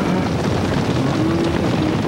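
Steady wind noise buffeting an outdoor microphone, a dense rumble and hiss, with a faint drawn-out low tone in the second half.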